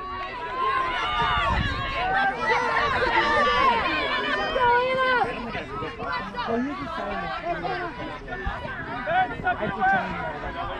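Several voices calling out and talking over one another at once, louder in the first half and easing off after about five seconds.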